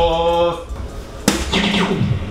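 Background music holding a pitched note, then, a little over a second in, one sharp click of a dart striking a soft-tip electronic dartboard, followed by a brief noisy sound.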